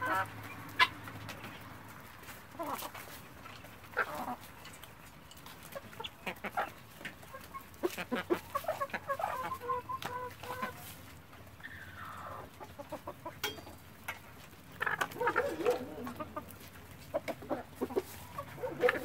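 Free-range chickens clucking as a mixed flock with helmeted guineafowl feeds, short calls coming in scattered runs with a busier burst of calls near the end. Sharp clicks of beaks pecking at the ground come in between.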